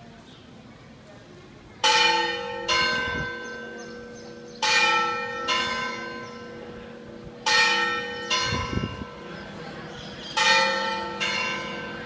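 Church bells ringing a two-stroke pattern: a pair of strikes on two different-pitched bells, repeated four times about every three seconds, each stroke ringing on and dying away.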